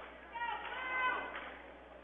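Faint crowd sound in a gym: one high voice calls out, held for about a second, over a low murmur.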